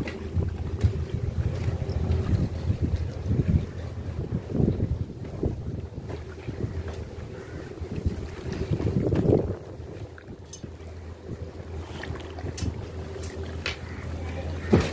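Steady low hum of a houseboat's engine underway, with wind gusting on the microphone and a few light knocks.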